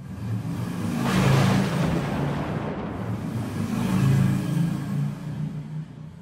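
Sound effect of a racing car engine revving, swelling loudly about a second in and again around four seconds, then fading away near the end.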